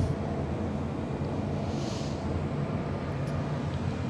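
A steady low room hum, with a soft, drawn-out exhale about two seconds in.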